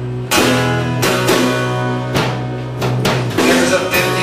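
Acoustic guitar strummed together with an amplified electric guitar, an instrumental passage of a live song with no singing; chords are struck about once a second over a held low note.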